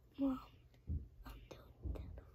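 A single spoken word, then quiet whispering.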